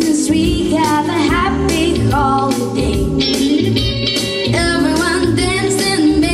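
A young girl singing solo through a handheld microphone over an instrumental backing with bass and a steady beat.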